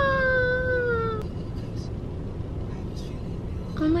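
A woman's drawn-out, high-pitched 'ahh' of alarm that falls in pitch and ends about a second in, followed by a steady low rumble inside a car cabin.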